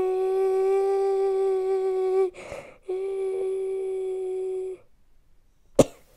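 A woman singing unaccompanied, holding one long steady note for about two seconds, taking a quick breath, then holding the same note for about two seconds more. A single sharp click comes near the end.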